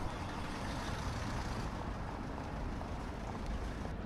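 City street traffic: a steady rumble of vehicles, with a brighter hiss over the first second and a half that then eases off.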